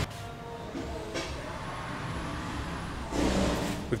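Street traffic: a steady motor-vehicle hum and low rumble that swells louder near the end.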